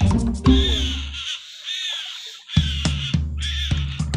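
Background music with a heavy bass line that drops out for about a second in the middle, with a myna calling over it.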